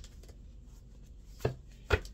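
A thick deck of cards knocked down onto a desktop: two sharp knocks about a second and a half and two seconds in, the second the louder.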